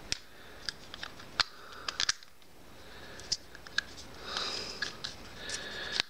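Scattered small sharp plastic clicks and taps from hands handling a compact SJ4000 action camera, with a brief soft rustle about four and a half seconds in.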